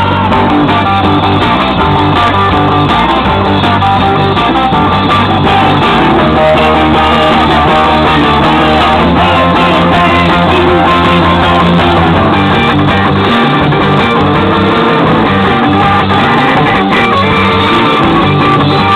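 Live band playing guitar-driven music, loud and continuous, with strummed guitar over bass.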